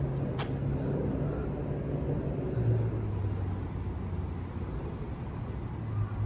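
Steady low hum of road traffic, its pitch dropping slightly just under halfway through, with a brief click about half a second in.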